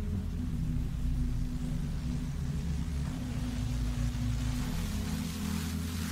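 AI-generated soundtrack of a rainy night street: a low, sustained ambient music drone with a steady hiss of rain that grows louder in the second half.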